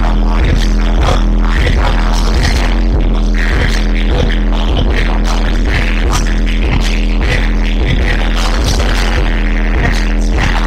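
Live hip-hop played loud through a club PA: a heavy, bass-driven beat with rapping over it on microphones.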